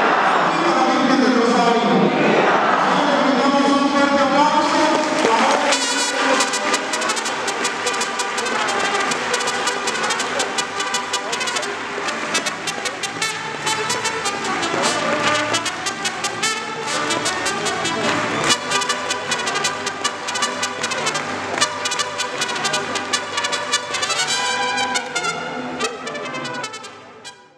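A mariachi band of trumpets and strummed guitars playing with a steady strummed beat. It comes in strongly about six seconds in, after a few seconds of voices.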